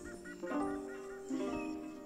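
Instrumental intro of a recorded backing track: held chords that change every half second to a second, with a short repeating figure above them.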